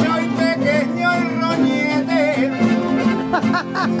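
Aragonese jota de picadillo played on piano accordion and guitars, steady held accordion chords under a wavering voice line. A burst of laughter comes near the end.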